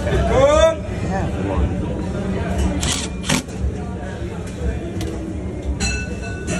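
A short voice-like sound near the start, over a steady low machine hum. A couple of sharp clicks come in the middle and one near the end.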